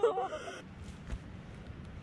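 A voice trails off in the first half second. Then come faint rustling and a few light ticks as hands pick through dry pine needles to pull up morel mushrooms.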